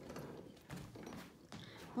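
Metal frame of a fold-out sofa bed being pulled out by its front handle: a faint rustle with a few soft mechanical clicks.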